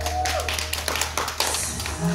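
Audience clapping at the end of a song, irregular scattered claps, over the last low note of the backing music fading out about a second and a half in.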